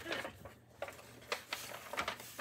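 Brown paper bag being handled, giving a few short crackles and rustles.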